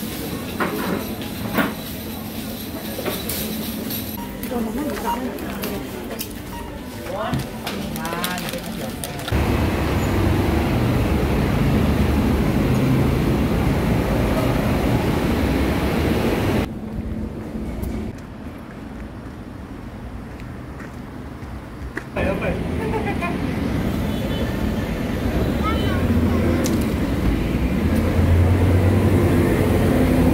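Indoor shop ambience with scattered small clicks and faint voices, cut about a third of the way in to louder city street noise of traffic rumble, which eases for a few seconds in the middle and returns near the end.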